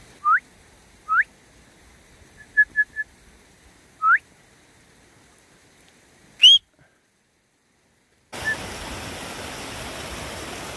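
A shepherd's whistled commands to working sheepdogs: three short rising whistles with a quick run of three short pips among them, then a louder, higher rising whistle about six and a half seconds in. After a short silence, the steady rush of a brook starts near the end.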